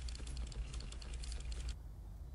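A quick run of small, sharp ticks and scratches from work at a desk, over a steady low hum; both cut off abruptly near the end.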